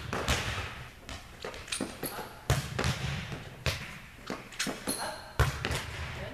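Volleyball hitting drill in a large, echoing gym: sharp smacks of the ball being struck and bouncing off the floor, with the two loudest about two and a half and five and a half seconds in, between lighter knocks.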